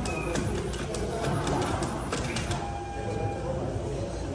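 Unitree quadruped robot dog walking, its feet and joints giving a run of light clicks and taps, several a second, on a hard epoxy floor.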